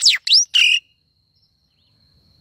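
Songbird perched close to the microphone giving a quick call: a steep falling whistle, a rising whistle and a short final note, all within the first second.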